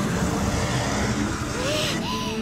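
Loud, continuous rumbling roar of a giant fanged monster as its jaws close in, an anime sound effect. A short, small vocal whimper rises and falls near the end.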